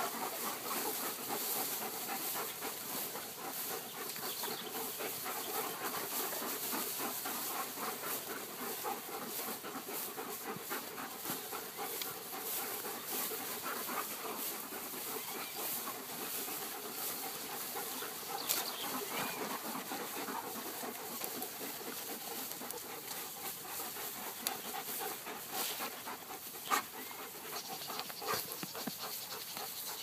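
Young Beauceron dogs panting as they play, over a steady noisy background, with a few short sharp sounds in the second half.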